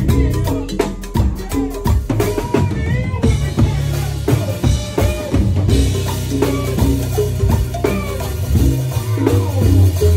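Live band music led by an acoustic drum kit played with sticks: dense snare, tom, kick and cymbal hits. Sustained low bass notes and keyboard lines sit underneath.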